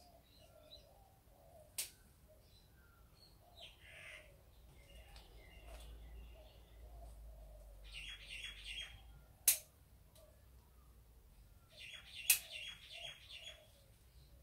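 Small birds chirping in two short bursts of rapid notes, with three sharp clicks from picking flowers off a shrub: one about two seconds in, one a little past the middle and the loudest about three-quarters through.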